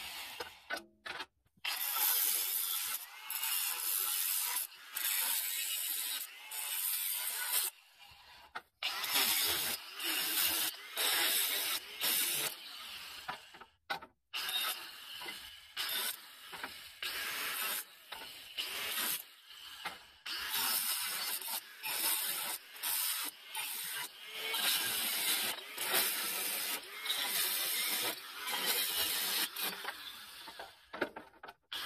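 A saw cutting through the steel tube bars of an IBC tote cage, a rough metallic rasping that comes in repeated bursts of a second or two with short pauses between cuts.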